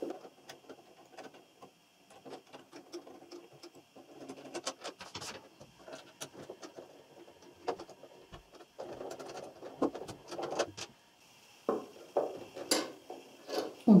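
A screwdriver unscrewing the needle-plate screws of a Janome computerized sewing machine, with many small irregular clicks and short scrapes of metal and plastic as the hands work at the plate.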